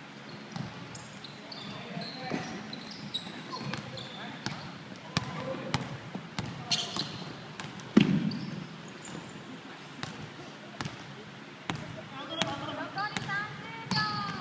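Basketball bouncing on a hardwood gym floor during play, with scattered knocks, short high squeaks and one loud thump about eight seconds in. Players' voices call out near the end.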